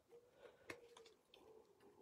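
Near silence, with a few faint clicks of scissors snipping thin card, the clearest about two-thirds of a second in.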